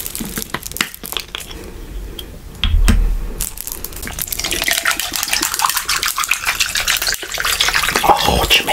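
Crackling clicks of a large plastic water bottle being handled and opened, a knock about three seconds in, then water pouring from the bottle into a plastic cup of ice, growing louder towards the end.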